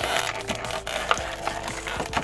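Background music with steady held notes, over thin plastic blister packaging clicking and crinkling as a small die-cast mini figure is pried out of its tray.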